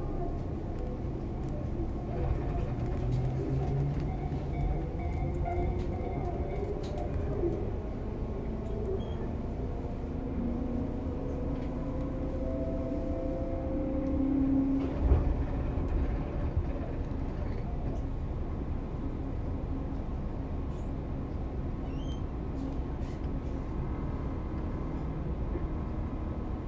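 Running sound heard inside a Tobu 10030-series electric motor car (field-chopper control) as it approaches a station: steady wheel-and-rail rumble with faint whining tones that come and go, and one heavy thump about fifteen seconds in.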